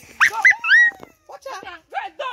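A few short, high-pitched cries in the first second, each gliding up and then falling away, followed by softer scattered sounds.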